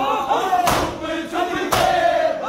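Matam: a crowd of men beating their bare chests with their hands in unison, one loud slap about every second, keeping time with many voices chanting a noha.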